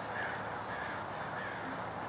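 A few faint, caw-like bird calls over a steady outdoor background hum.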